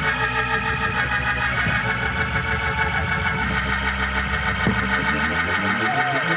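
Gospel church organ playing held chords over a bass line, with a few sharp percussive hits.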